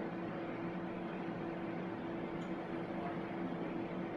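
Steady low hum of laboratory equipment and ventilation, with two constant low tones and no distinct clicks or knocks.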